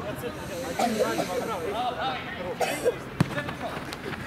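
Players' voices calling out around the pitch, and one sharp thud about three seconds in: a football being kicked.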